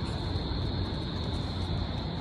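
Steady city background: a low rumble of traffic with a constant high hiss over it, unchanging throughout.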